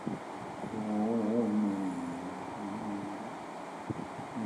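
A lone singing voice with no accompaniment holds one long note of a Hindi film song, wavering in pitch near the middle and fading out before the next line.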